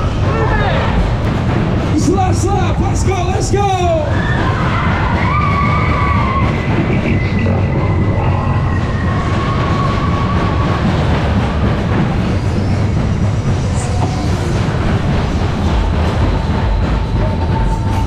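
Superbob fairground ride running at speed, heard from one of its cars: a loud, steady rumble of the cars on the track with wind noise. Voices call out about two to four seconds in, and fairground music plays under it.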